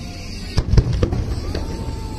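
Aerial fireworks shells being fired: a quick cluster of sharp booms about half a second to a second in, as the shells climb on bright tails.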